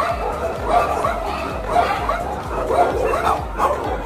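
Dogs in shelter kennels barking, a close run of short barks, several overlapping and following each other every half second or so.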